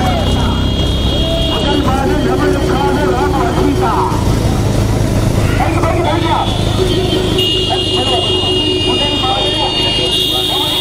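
Shouting voices over the steady low running of motorcycle engines riding alongside a racing bullock cart. A steady high-pitched tone sounds briefly near the start and comes back from about six seconds in.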